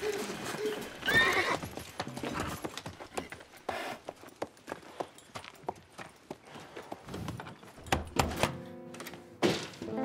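A horse whinnies once about a second in, and horses' hooves clop irregularly through the rest. Music comes in near the end.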